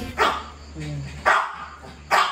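A dog barking twice, about a second apart, with short sharp barks.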